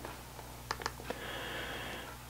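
Three faint computer mouse clicks in quick succession about a second in, over a steady low hum.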